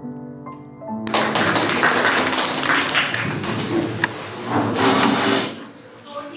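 A short piano phrase, cut off about a second in by a roomful of children clapping loudly, with a few voices mixed in. The clapping dies down near the end.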